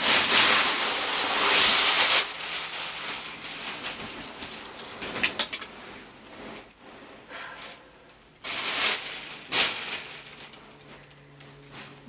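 Plastic wrapping bag and tulle fabric rustling and crinkling as a wedding dress is unpacked by hand: a loud continuous rustle for the first two seconds, then quieter, shorter bursts of handling.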